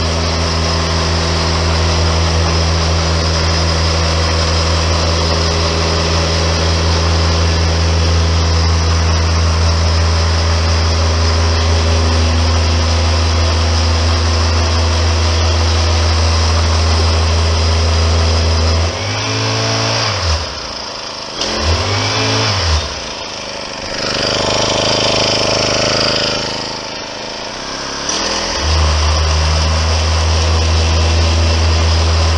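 Small petrol engine of a vibrating power screed running steadily at high speed while the screed levels fresh concrete. About two-thirds of the way through it is throttled back and revved up again a few times, then settles back to full speed near the end.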